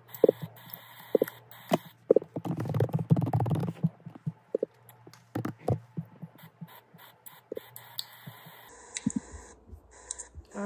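Scattered light taps and clicks of a laptop keyboard and trackpad as card details are typed in, with a brief rustle about three seconds in. A low steady hum runs underneath and stops near the end.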